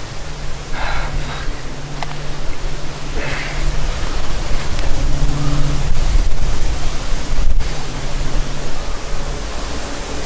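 Wind rushing over the microphone: a loud, steady noise with a heavy low rumble, growing louder after the first few seconds.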